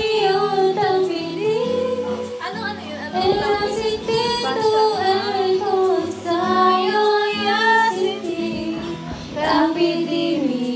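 A woman singing a slow, sustained vocal line into a handheld microphone, her voice sliding and wavering between held notes over a soft backing of sustained low chords.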